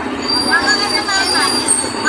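Several children's voices chattering and calling out at once, overlapping, with a thin steady high-pitched whine beneath them.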